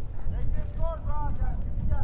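Wind rumbling on the microphone, with people talking in the distance about half a second to a second and a half in.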